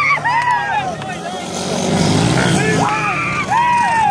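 Racing dirt bike engines revving hard, their pitch repeatedly climbing, holding and dropping with throttle changes and gear shifts, with a louder, rougher rush near the middle as a bike passes close.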